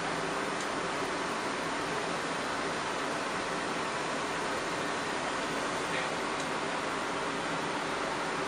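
Steady hiss and hum of running machinery, unchanging throughout.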